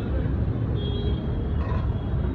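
Steady low rumble of outdoor street noise, with a faint high tone a little under a second in.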